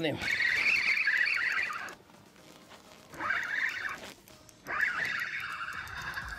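Fishing reel whirring in three bursts as a hooked crappie is reeled in, the first lasting about two seconds and the last running on near the end.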